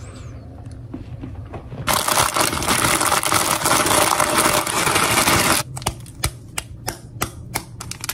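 Plastic bag of Ppushu Ppushu dry-noodle snack crushed and squeezed by hand, a loud dense crackling for about three and a half seconds starting about two seconds in, then sharper separate crinkles and clicks as the bag and its seasoning packet are handled.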